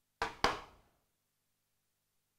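Two sharp knocks about a quarter of a second apart, the second louder, each dying away quickly.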